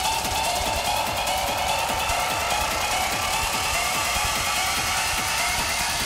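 Industrial techno music from a live DJ mix: a dense, steady electronic texture with a fast repeating high synth pattern.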